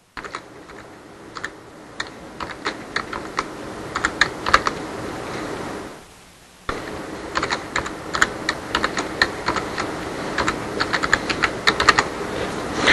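Typing on a computer keyboard: irregular runs of key clicks, with a short pause about six seconds in.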